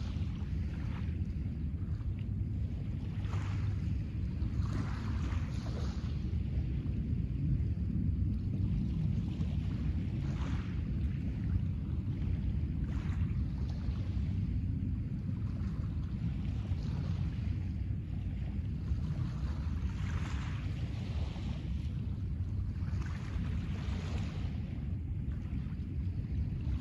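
Steady low wind noise on the microphone, with small waves washing onto a pebble beach about half a dozen times, a few seconds apart.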